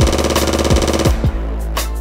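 Hip hop beat playing without vocals: a deep steady bass with kick drums, and a rapid stuttering roll that stops about a second in.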